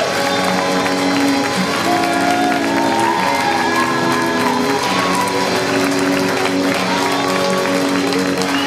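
Live band music played through a PA: electric guitars and keyboard holding long chords, with a few sliding high notes. Some audience clapping is mixed in.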